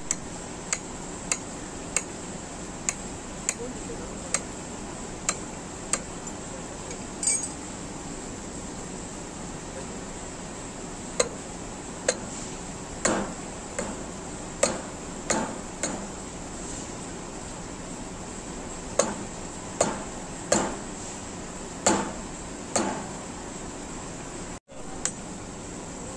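Hammer striking a tyre-type flexible coupling to drive it onto a shaft between motor and pump. About nine light, evenly spaced taps in the first six seconds, then after a pause heavier blows with a brief ring, in two bursts of several strikes each.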